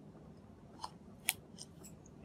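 Dry-erase marker writing letters on a whiteboard: a few short, faint scratchy strokes, the loudest about halfway through.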